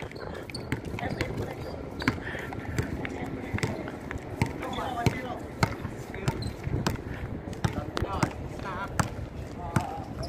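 A basketball bouncing on an outdoor concrete court, dribbled in a series of sharp, irregularly spaced bounces, with players' voices calling out now and then.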